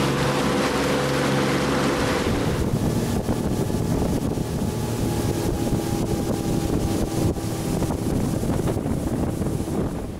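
A boat's outboard motor running under way, with wind on the microphone and rushing water. After about two seconds the engine tone drops out, leaving the wind and water noise with a fainter, higher steady hum.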